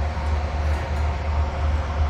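Steady low machine rumble with a faint steady hum over it, from a Kleemann tracked mobile crusher running on a demolition site.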